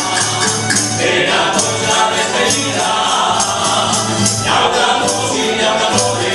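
Live folk music: voices singing together over a band of plucked strings, with a jingling percussion beat keeping time.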